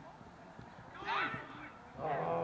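A single short shout from a voice on the pitch about a second in, over faint background noise.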